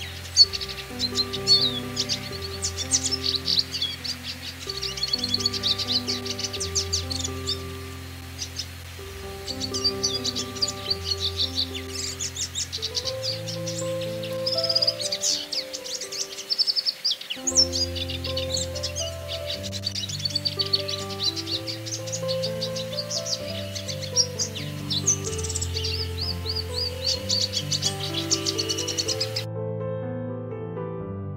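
Siskins singing a fast, continuous twittering song of rapid chirps and trills, which stops just before the end, over slow background music of long held notes.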